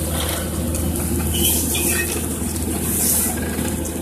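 Farm tractor engine running steadily with a low drone, pulling an implement that lays drip irrigation hose. A few brief squeaks come through around the middle.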